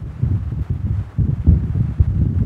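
Low, uneven rumble that rises and falls in level, with no other clear sound over it.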